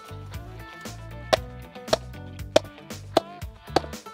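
A hammer striking the top of a wooden stake five times, about every 0.6 s starting a little over a second in, driving the stake down into compacted gravel. Background music plays underneath.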